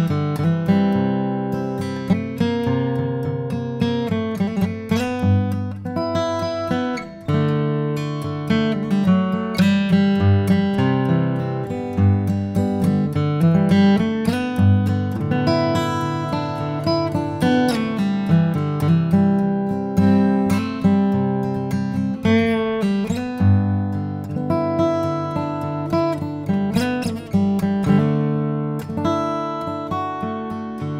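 Martin D-18 dreadnought acoustic guitar, solid spruce top with mahogany back and sides, played solo: a chord-based piece of picked and strummed notes, ringing continuously throughout.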